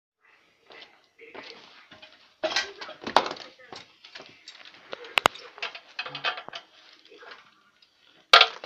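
Indistinct talking mixed with scattered handling knocks, and two sharp clicks close together about five seconds in.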